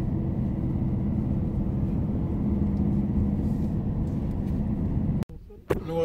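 Steady road and engine noise of a car driving, heard from inside the cabin; it cuts off abruptly about five seconds in.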